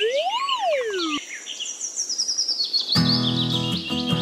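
Background music laid over a steady run of repeated bird chirps. A single pitched swoop rises and falls in the first second, and a fuller accompaniment with low notes comes in about three seconds in.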